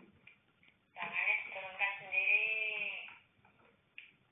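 A person's voice: one drawn-out, wavering vocal sound lasting about two seconds, heard through a home security camera's small microphone.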